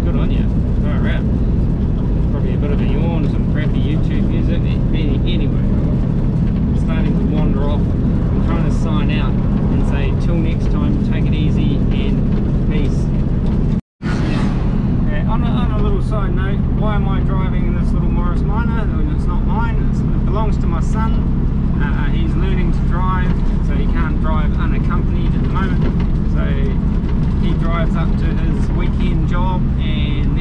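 Morris Minor's four-cylinder engine and road noise heard from inside the cabin while driving: a steady low drone under the talk. The sound cuts out completely for an instant about 14 seconds in.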